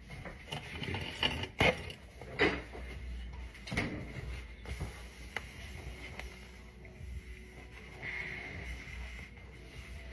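Kitchen handling noises: a few short knocks and rustles in the first few seconds as paper towels are pulled out and folded, then quieter handling, over faint background music.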